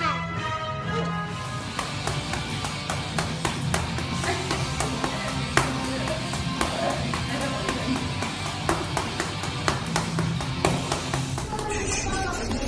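Background music, with irregular sharp thuds of a gloved fist punching a bare stomach, one landing harder a little past the middle.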